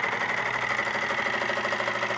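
Homemade soda-can Stirling engine running at full speed, which the owner puts above about 2000 RPM. It makes a fast, even mechanical ticking with a steady high whine.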